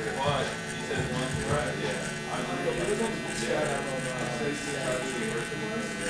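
Cordless electric hair clipper running with a steady buzz as it trims hair at the sideburn.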